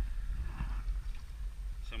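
Low, uneven rumble of wind on the microphone aboard a small boat on open water.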